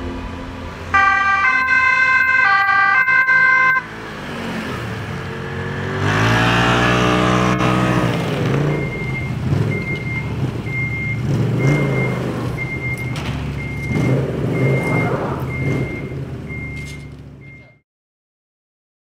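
Fire-brigade Ski-Doo snowmobile sounding a two-tone siren for a few seconds, then its engine revving up. From about halfway on the engine runs on under a short high beep that repeats about every two-thirds of a second, and everything fades out near the end.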